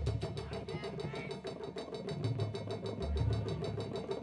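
Drum and bugle corps percussion playing a fast, even clicking rhythm of about eight clicks a second, with low drum notes underneath.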